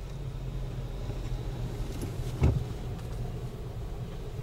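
Car driving along, heard from inside the cabin: a steady low engine and road rumble, with one short thump about two and a half seconds in.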